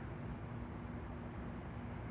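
Faint, steady outdoor background noise picked up by the Pixel 6a's phone microphone: a low hiss with a faint low hum running through it.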